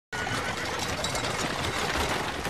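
Street bustle dominated by a dense, continuous clatter of horses' hooves and carriage wheels on cobblestones.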